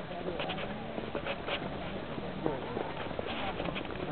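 Faint voices of people talking, no one close to the microphone, with a few light clicks.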